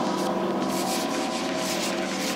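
Chalk scratching across a blackboard in a series of short writing strokes, over a faint steady droning tone.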